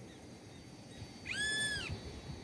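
A single high-pitched animal call, rising, holding steady and falling away over about half a second, near the end.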